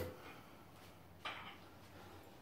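Mostly quiet, with one short scrape about a second in as the steel handle of a trolley jack is drawn out and set down. A louder clank from just before fades away at the very start.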